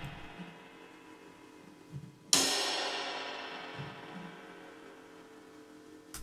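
Cymbal sample played back: one hit about two seconds in that rings out over several seconds, after the fading tail of an earlier hit. The decaying tail is grainy and wobbly from warp and iZotope Vinyl processing on the room mic.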